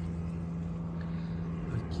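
Steady low hum of an idling car engine, the 1992 Chevrolet Caravan's 4.1-litre inline six, with no change in pace. A man's voice says one word near the end.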